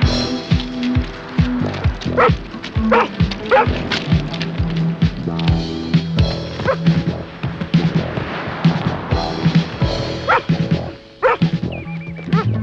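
Background music with a dog barking several times over it: a few barks about two to three seconds in and a couple more near the end.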